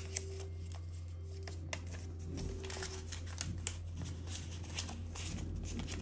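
Paper banknote being handled: a $100 bill folded and slid into a clear vinyl cash-envelope pocket, making soft rustles and small scattered clicks over a steady low hum.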